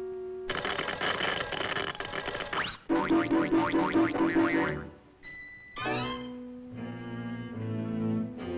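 Cartoon sound effect of a novelty hand buzzer going off in a handshake: a loud, harsh electric buzz from about half a second in, lasting about two seconds, then a second pulsing, rattling burst. Orchestral cartoon music takes over in the last seconds.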